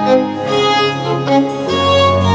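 Baroque violin playing a melodic line of held notes over a sustained continuo bass, with the bass moving to a new, lower note near the end.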